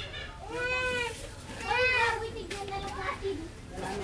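A cat meowing twice, each meow rising then falling in pitch.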